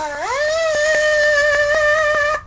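A single high musical note slides up at the start and then holds steady for about two seconds, with a light tick about four times a second. It cuts off abruptly.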